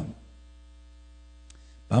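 Steady electrical mains hum in the recording during a pause in a man's speech. His voice trails off at the start and starts again near the end, with a faint tick in between.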